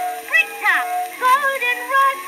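Instrumental break of the small orchestra backing a 1909 acoustic-era phonograph recording of a popular song: pitched melody lines with several quick swooping slides up and down. The sound is thin, with almost no bass.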